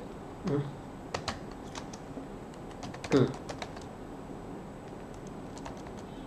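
Typing on a computer keyboard: scattered, irregular key clicks, with a man's short 'hmm' twice.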